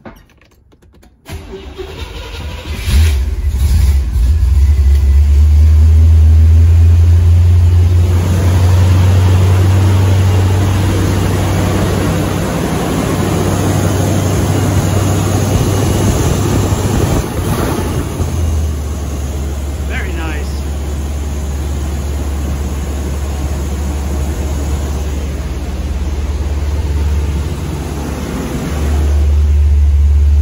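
Cold start of a 1976 Corvette's Chevy 350 V8 with newly installed spark plugs: the starter cranks for about a second and a half, the engine catches about three seconds in, and it settles into a steady idle.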